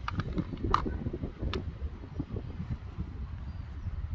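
Wind buffeting the microphone, an uneven low rumble, with two brief clicks about a second apart near the start.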